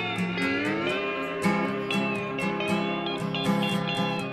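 Instrumental blues: a lead electric guitar plays notes that glide up and down in pitch, over a steady, repeating lower guitar accompaniment.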